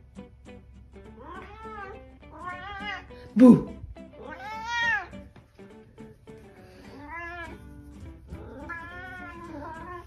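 Domestic cat meowing about five times in long calls that rise and fall in pitch, with one loud, sudden sound about three and a half seconds in, over plucked-guitar background music.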